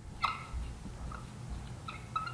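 Dry-erase marker squeaking on a glass whiteboard while words are written, in three short high squeaks.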